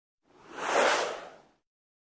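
A single whoosh sound effect from a TV news logo animation, swelling up and fading away within about a second.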